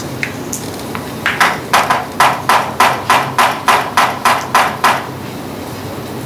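A run of about a dozen sharp, evenly spaced strikes, about three a second, starting about one and a half seconds in and stopping about a second before the end.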